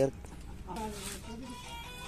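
Faint voices with music in the background.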